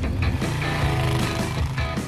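Motorcycle engines running as the bikes ride off, under background music.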